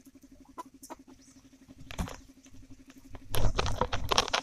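Small clicks and taps of a knife peeling and cutting shallots on a steel plate, then a louder cluster of knocks and rustling near the end.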